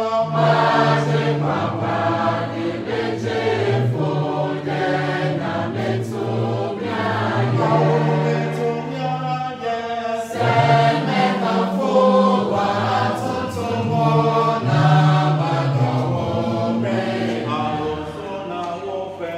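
A congregation singing a hymn together, many voices holding long notes in phrases, without instruments.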